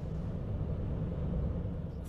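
Steady low rumble of a moving car, heard from inside the cabin.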